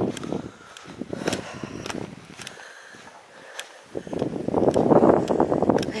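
Footsteps walking through grass with rustling and a few light clicks, the rustling growing louder in the last two seconds.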